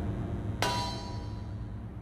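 A single sharp metallic clang about half a second in, ringing on and slowly fading, over a low steady hum.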